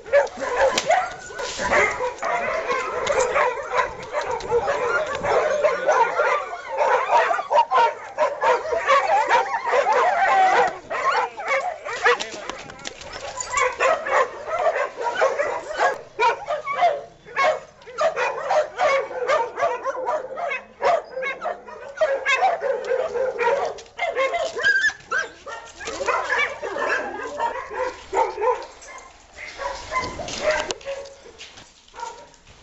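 A pack of dogs fighting, barking and yelping almost without a break as they attack a single dog, with whimpering among the yelps.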